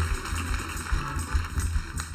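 A live band vamps softly behind the talk, mostly a low bass line pulsing, over a steady haze of room and audience noise.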